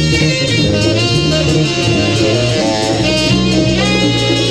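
Jazz quintet playing loud and dense, with electric bass, drums, percussion and saxophones together.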